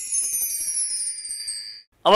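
A shimmering chime sound effect under an animated title card: several high, bell-like tones, some gliding slowly downward, that cut off just before the end.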